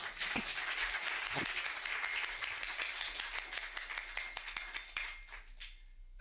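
Audience applauding, a dense run of clapping that dies away near the end.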